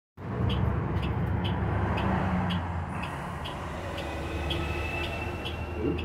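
Interior of a New Flyer city bus: the engine running with a steady low hum and road noise through the cabin. A faint regular tick sounds about twice a second, and a thin high steady tone comes in about two-thirds of the way through.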